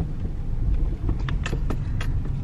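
Car interior road noise: the low, steady rumble of the engine and tyres as the car drives slowly, with a few short light clicks in the second half.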